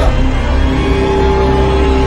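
Music: sustained held notes over a steady low bass, with a new held note coming in under a second in.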